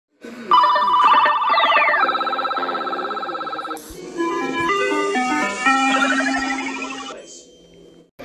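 Short electronic ident jingle: warbling, ringtone-like tones and a quick falling sweep. A run of stepped notes and a rising arpeggio over a held low note follows, and the jingle cuts off about seven seconds in.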